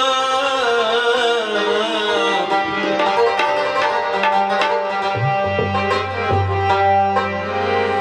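Afghan folk music on harmonium and tabla: the harmonium holds steady chords while the tabla plays a run of strokes. A little past halfway a deep tabla bass-drum stroke swoops up in pitch and rings on for about two seconds.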